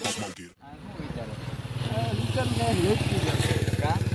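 Electronic music cuts off just after the start. A motorcycle engine then runs steadily, growing louder over the next couple of seconds, with voices talking over it.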